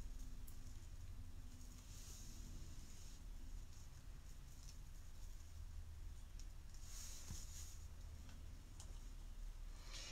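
Faint rustling and crinkling of gold wired ribbon and thin cord being handled as the cord is tied around the ornament's neck, in two soft patches, one about two seconds in and one near seven seconds, with a few faint clicks over a steady low hum.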